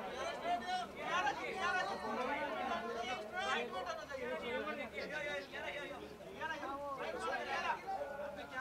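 Several people talking at once, their voices overlapping into an unbroken babble with no single clear speaker.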